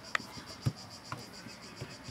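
Insects chirring in a steady, high, finely pulsing drone. A couple of faint knocks and one dull thump about a third of the way in come from play on the pitch.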